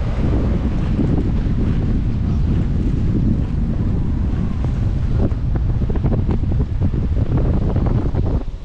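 Wind buffeting the microphone of a camera on a moving car: a loud, continuous low rumble with rapid fluttering gusts.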